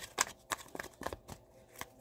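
A deck of tarot cards being shuffled by hand: a quick series of short card snaps, about four a second.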